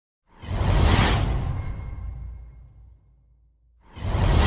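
Logo-intro sound effect: a sudden loud whoosh with a deep bass boom, fading away over about three seconds.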